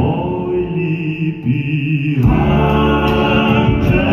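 Live pop ballad: three male voices singing long held notes in harmony with a small band of keyboard, guitars and drums. The accompaniment thins out for about two seconds, then the full band comes back in.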